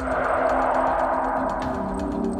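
Spooky cartoon sound effect: a noisy swell that starts suddenly and fades away over about a second and a half, over a low held note of eerie background music.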